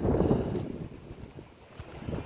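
Wind buffeting the microphone: an uneven low rumble that is strongest at first and dies down over about a second and a half.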